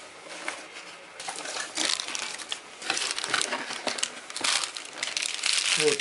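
Cardboard box and a small plastic bag of bolts handled and crinkled: a run of irregular rustles and crackles that gets denser and louder from about two seconds in.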